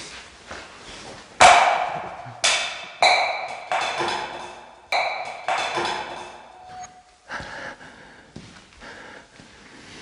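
A series of about seven sharp knocks, each followed by a brief ringing. The loudest comes about a second and a half in, and the strikes thin out after about seven seconds.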